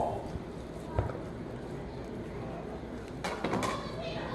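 A long slicing knife cutting through a smoked brisket on a plastic cutting board, mostly faint: one short knock about a second in, then soft scraping near the end.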